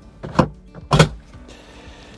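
Thetford cassette toilet's sliding blade being worked: two quick sliding clacks, the second, about a second in, sharper and louder. The blade still shuts okay with the ceramic liner fitted.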